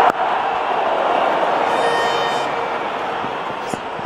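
Crowd noise from a packed cricket stadium, steady and slowly easing off. It opens with a single sharp knock of the bat striking the ball.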